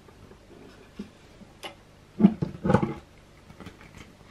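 Cast-iron sewing machine head being tipped on its hinges in its wooden base. A few separate knocks and clunks come through, the loudest about two and a quarter seconds in, followed by a short rattling clatter.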